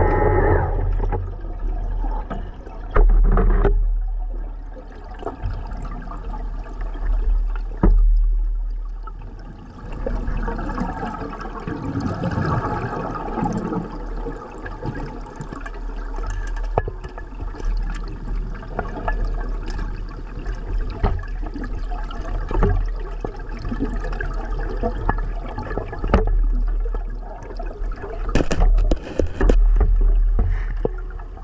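Scuba diver breathing underwater: gurgling surges of exhaled bubbles every four to five seconds, with scattered knocks against the camera housing.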